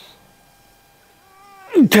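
A man's voice, drawn out and sliding down in pitch, begins near the end after about a second of quiet: the start of a long, sung-out count in a yoga stretch.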